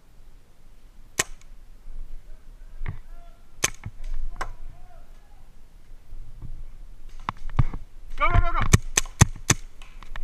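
Paintball markers firing: a few single shots spaced a second or more apart, then a quicker string of shots in the last three seconds. A voice calls out among them.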